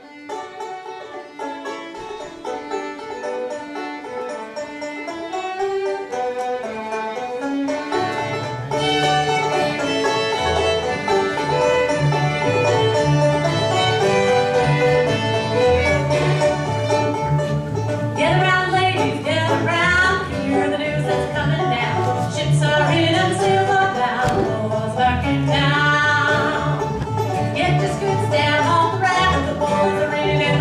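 Live bluegrass band playing a tune on banjo, acoustic guitar, upright bass and fiddle. It opens thinly, the bass comes in about eight seconds in, and the full band plays louder from there on.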